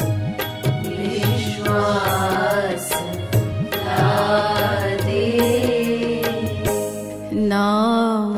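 Hindi devotional bhajan: a voice singing a gliding melodic line over steady rhythmic percussion, with a brief pause in the vocal near the end.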